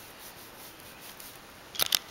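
Handling noise: faint room hiss, then a quick cluster of sharp clicks and rustles near the end.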